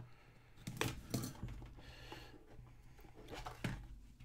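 A small blade slitting the plastic wrap on a foil-covered cardboard card box, then the lid being pulled open. Quiet, with a few short clicks and a brief scraping rustle.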